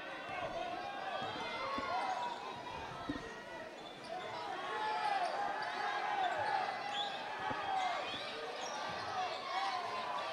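A basketball being dribbled on a hardwood gym floor, with many short sneaker squeaks and background voices from players and the crowd echoing in the gym.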